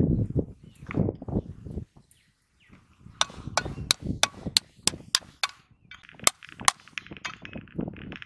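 A sickle-like knife blade tapping a snail shell to crack it: about nine sharp clicks in quick succession about three seconds in, then two more. Before that, soft scuffing of hands in dry soil, and a raspy sound in the last two seconds.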